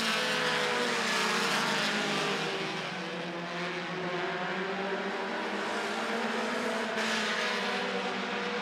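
A field of short-track race cars running at speed around an asphalt oval, several engines sounding at once in overlapping notes. It is fairly steady, dipping slightly about three seconds in.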